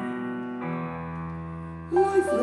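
Instrumental music: held keyboard chords, with a lower bass note coming in about half a second in.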